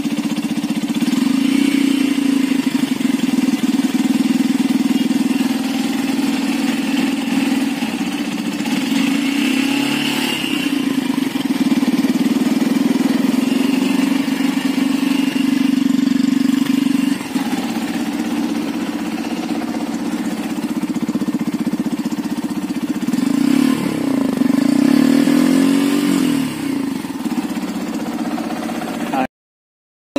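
Yamaha FZ-X's 149 cc air-cooled single-cylinder engine running at a steady idle.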